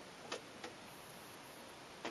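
Two faint light clicks, about a third of a second apart, over a steady low hiss of room tone: handling noise at the shooting bench.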